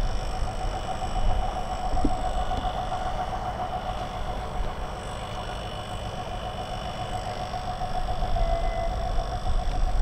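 Soviet 2TE10L diesel locomotive running as it moves slowly: a steady low diesel rumble with a steady whine on top. Its engine is a two-stroke opposed-piston 10D100.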